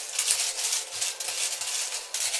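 Red bead garland rattling and rustling as the strand is handled and pulled through the hands, an irregular run of small quick clicks.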